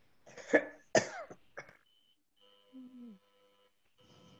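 A person coughing twice in quick succession, about half a second and a second in, with a smaller cough just after, heard over an online call.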